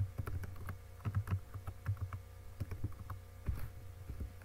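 Typing on a computer keyboard: quick, irregular keystroke clicks with short pauses between bursts, over a steady low hum.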